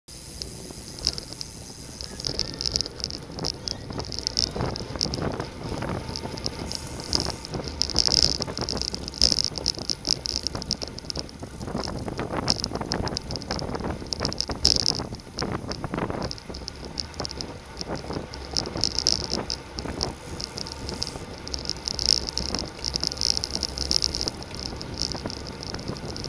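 Road bicycles racing at speed: wind rushing over the onboard camera's microphone, with tyre and road noise and a constant run of rattles and clicks from the bike.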